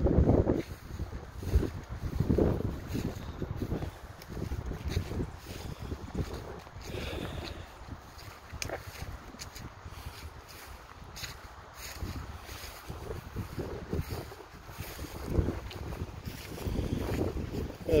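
Wind buffeting the phone's microphone in irregular gusts: a low rumble that swells and fades, strongest in the first few seconds and again near the end.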